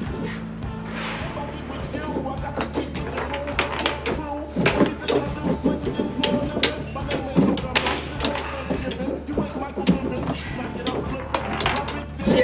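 Background music with a steady low beat, over the repeated sharp clacks and knocks of a foosball game: the ball struck by the plastic players and the rods slammed and spun, coming thick and fast from about four seconds in.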